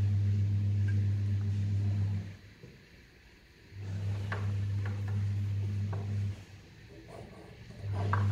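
Conch shell (shankha) blown as part of a puja: long, steady low notes of about two and a half seconds each, with a breath's pause between them. A few light taps fall in the pause mid-way.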